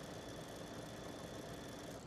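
Baby Lock Solaris embroidery machine stitching out a design: a faint, steady mechanical hum.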